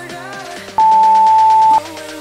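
Workout interval-timer beep: one long, steady, high beep of about a second, starting a little under a second in, marking the end of the countdown and the start of the exercise. It plays over a pop song.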